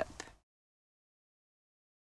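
Complete digital silence: a voice trails off in the first half-second, then the soundtrack drops out entirely.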